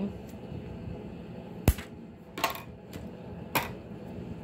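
Scissors cutting through flexible magnetic strip with one sharp snap, followed by two softer clicks about a second apart.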